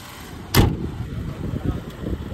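A car hood slammed shut once, a sharp thump about half a second in, over a low rumble.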